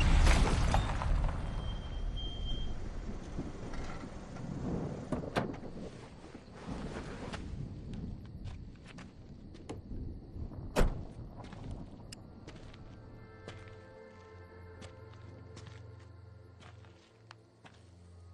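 Film soundtrack: a loud rushing noise that fades away over several seconds, with scattered knocks and thuds and one sharp loud hit about eleven seconds in. Later a low steady hum with several held tones of music comes in underneath.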